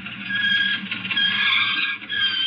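Radio-drama sound effect of a car braking to a stop, with a steady high-pitched squeal that swells about a third of a second in.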